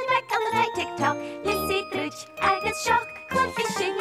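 Children's TV theme tune: bright instrumental music with a steady beat.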